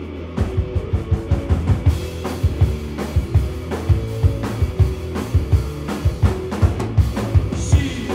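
Live rock band with electric guitar, bass and drum kit starting a song: sustained guitar and bass notes, then the drums come in about half a second in with a steady beat.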